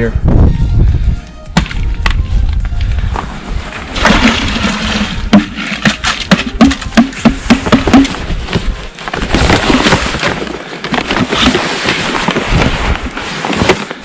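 Plastic sap buckets being handled while sap and chunks of ice are tipped from one bucket into a carrying pail, with snow crunching underfoot. There is a run of sharp clatters and crunches a few seconds in.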